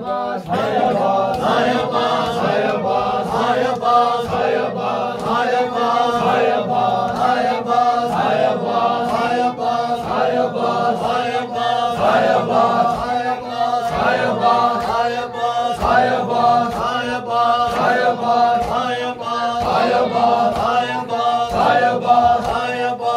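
Men's voices chanting a Shia nauha (Muharram lament) together, over a steady rhythm of sharp slaps as mourners strike their chests in matam.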